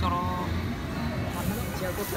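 A man's voice briefly, then background music over a steady low rumble of the room.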